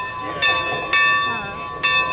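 Steam locomotive's bell ringing, struck about every half second: three strikes, each leaving a ringing tone that carries on between them.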